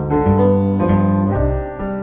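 Acoustic piano and plucked double bass playing a jazz bossa nova: steady piano chords over long, low bass notes that change every half second or so, with no singing.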